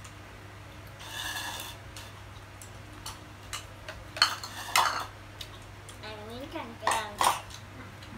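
Tableware clinking during a hotpot meal: a ladle and spoons against a metal pot and bowls, with chopsticks tapping. A few sharp, ringing clinks stand out near the middle and toward the end.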